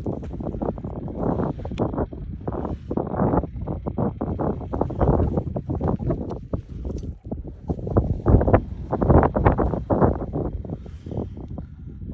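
Wind buffeting the microphone outdoors: an uneven, gusting rumble that swells and drops, loudest about two-thirds of the way through.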